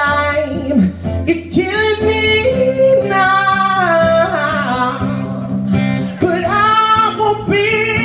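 A live pop-rock cover song: a singer holding long, sliding wordless notes over guitar accompaniment.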